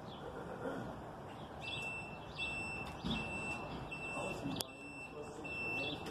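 A high electronic beep sounding in long pulses with brief gaps, starting about one and a half seconds in, over faint bird chirps and distant voices. A single sharp click comes near the end.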